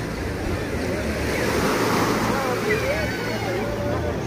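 Small waves washing onto a sandy beach, the wash swelling to a peak about halfway through and then easing.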